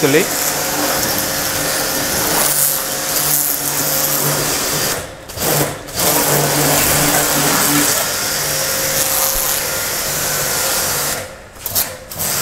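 Eurofine electric pressure washer running with a steady motor hum while its gun, fitted with a foam bottle, sprays a hissing jet onto the car body. The spray cuts out briefly twice around five to six seconds in and again near the end.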